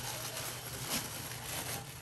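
Soft rustling of paper and packaging being handled by hand, with a few faint crackles.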